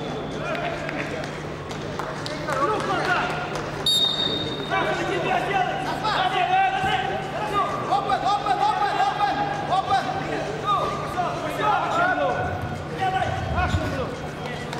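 Voices calling out and shouting in a sports hall during a wrestling bout, with a short high referee's whistle blast about four seconds in.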